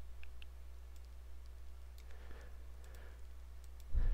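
A few faint, scattered computer mouse clicks over a low steady hum.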